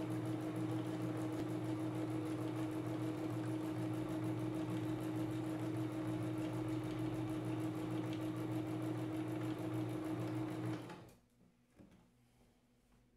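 Domestic electric sewing machine running steadily, stitching free-motion quilting through cotton fabric and batting with a constant hum. It stops suddenly about eleven seconds in as the quilting line closes where it began.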